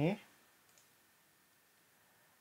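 A single faint computer mouse click about two-thirds of a second in, followed by near-silent room tone.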